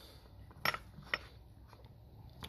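Two light metallic clicks about half a second apart: a steel socket used as a seal-seating tool knocking against the chainsaw crankshaft and seal as it is set in place.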